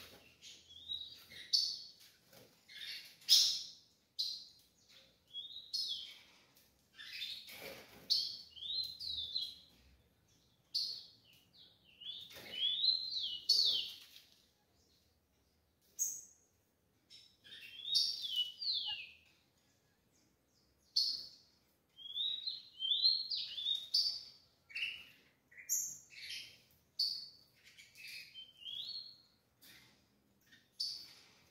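Caged rufous-collared sparrows (tico-tico) giving short chirps and quick falling notes, in irregular runs of a second or two with brief pauses between.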